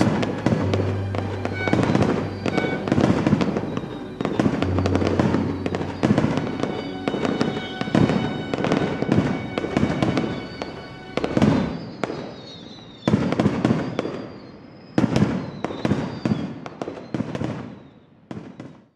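Aerial fireworks bursting in quick succession, sharp bangs and crackle coming thick and fast for the first ten seconds or so, then thinning to a few separate bursts with short lulls near the end.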